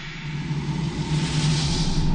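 Animated outro title sound effect: a whoosh that swells and builds over a steady low rumble, loudest near the end.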